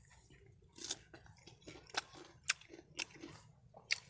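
A person chewing a bite of ripe peach close to the microphone: quiet, irregular crunches and wet mouth clicks, roughly one every half second.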